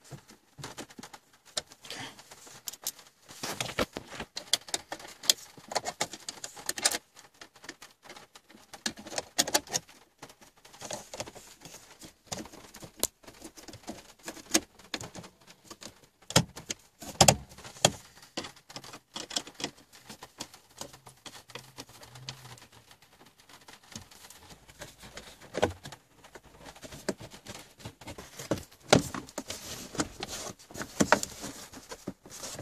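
Small screwdriver driving screws back into the stereo mounting in a car dashboard: irregular small clicks, scrapes and rattles of metal against plastic, with one sharper click a little past the middle.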